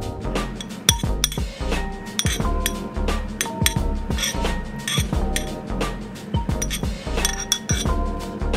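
Metal spoon clinking against a plate again and again as mushroom pieces are scraped off it, the sharpest clink about a second in. Background music with a steady beat plays throughout.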